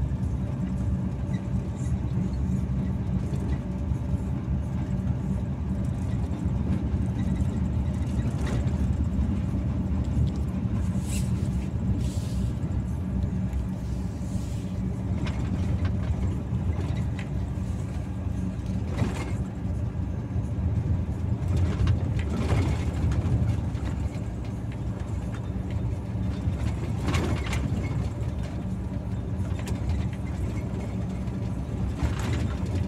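Truck engine droning steadily, heard inside the cab while cruising on the highway, with a few short clicks from the cab scattered through.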